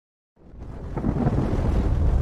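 Silence, then about half a second in a deep rumbling explosion sound effect fades in and keeps growing louder.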